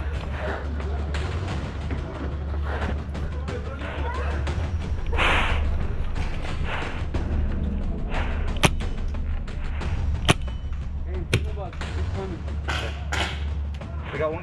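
Paintball markers firing single shots: a few sharp pops spaced a second or more apart, mostly in the second half, over a steady low rumble.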